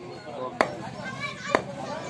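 Two chops of a heavy butcher's cleaver through raw beef into a wooden log chopping block, sharp and about a second apart.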